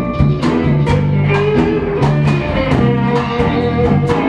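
A live blues band playing an instrumental passage: electric guitar lines over bass guitar and a drum kit keeping a steady beat.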